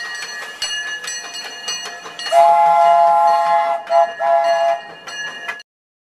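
Steam locomotive whistle of the E.P. Ripley sounding several notes at once: one long blast about two seconds in, then two shorter blasts. The sound cuts off suddenly shortly before the end.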